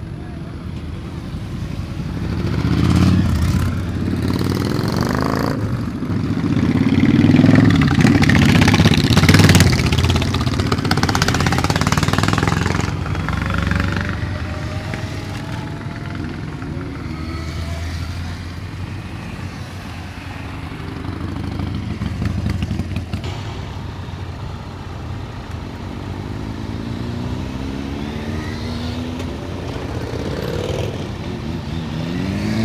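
Several motorcycles riding past one after another and pulling away, engines revving as they accelerate. The loudest passes come a few seconds in, and later single bikes are heard accelerating with rising engine pitch.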